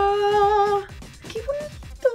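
A woman's voice holding one long, steady sung-out note for just under a second, then the start of a short spoken exclamation, over light background music.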